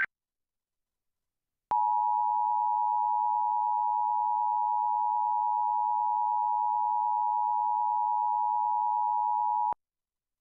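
Emergency Alert System attention signal: a steady two-note alert tone that starts sharply about two seconds in after a short silence, holds unchanged for about eight seconds, and cuts off shortly before the end. It is the warning tone that introduces the spoken EAS test message.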